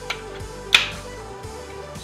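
A key card slides into a hotel key card energy-saver switch with a faint click. Under a second in, a single sharp clack follows as the contactor pulls in and the supply switches on. Background music plays throughout.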